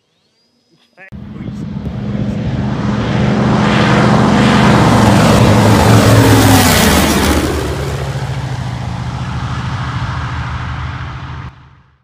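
A single-engine radial piston warplane making a low flyby. Its engine sound swells to a peak about halfway through, then fades away and cuts off just before the end.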